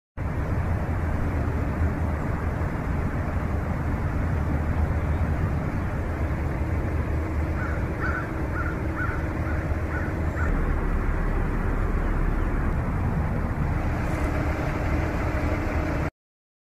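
Steady outdoor ambience of distant road traffic rumbling, with a run of about six crow caws near the middle. It cuts off suddenly at the end.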